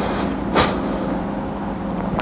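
Steady electrical hum over a background hiss, with one short burst of noise about half a second in.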